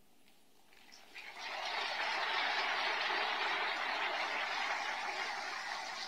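Crowd applauding, starting about a second in after a brief hush and holding steady.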